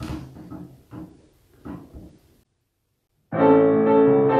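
Grand piano starting a boogie-woogie arrangement loudly about three seconds in, after a moment of dead silence.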